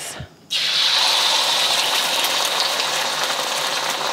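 Beaten eggs poured into a hot oiled wok, hitting the oil with a sudden loud sizzle about half a second in that then carries on steadily as the eggs fry.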